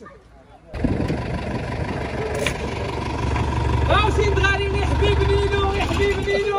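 Mercedes-Benz light truck's engine running with a steady low rumble, coming in abruptly about a second in.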